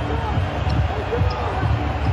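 A basketball dribbled on a hardwood court, the bounces coming steadily about three times a second.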